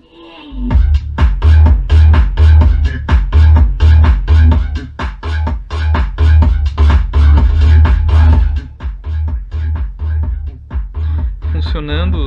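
Bass-heavy electronic dance music with a steady, pounding beat, played through a Gradiente STR 800 stereo receiver's amplifier and speakers as a test of its sound. It starts about half a second in, and the low end eases back in the last few seconds as the tone controls are turned.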